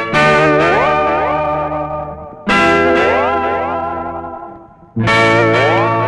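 Dramatic film background music: an effects-laden, guitar-like chord struck three times, about two and a half seconds apart. Each strike rings out and fades while notes slide upward.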